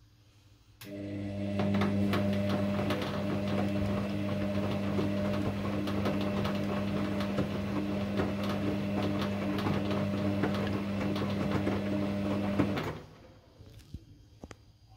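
Kogan front-loading washing machine on a quick wash: the drum motor starts about a second in and hums steadily as the drum turns the wet laundry, with a dense churning rustle, then stops suddenly near the end. This is one tumble stroke of the wash cycle.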